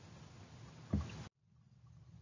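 Faint room tone with one brief low thump about a second in, then a moment of dead silence where the recording cuts out at a slide change.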